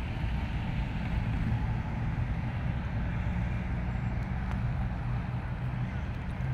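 Steady road traffic noise: cars running along a city street, with a constant low rumble.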